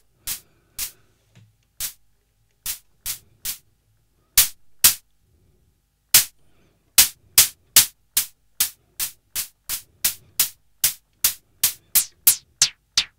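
Behringer Pro-1 analog synthesizer playing short hi-hat hits made of filtered noise while its filter resonance and envelope are being tweaked. The hits are scattered at first, then settle into a steady run of about two and a half a second from about seven seconds in.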